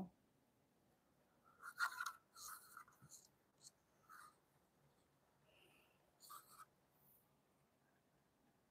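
A few faint, short scratches and clicks of small craft tools and cups being handled on a worktable, spread over several seconds in near silence.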